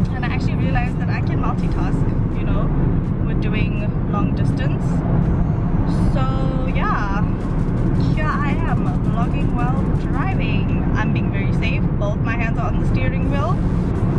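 Steady low road and engine noise inside a moving car's cabin at highway speed, under a woman talking.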